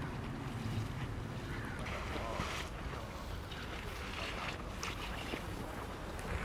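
Outdoor ambience: a steady low rumble of wind on the microphone, with faint distant voices.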